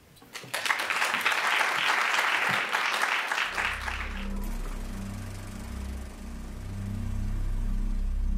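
Audience applauding for about three to four seconds, then dying away as low, sustained music notes come in and carry on to the end.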